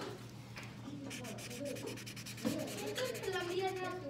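Felt-tip marker scribbling rapidly back and forth on paper as an area is coloured in, the strokes starting about a second in.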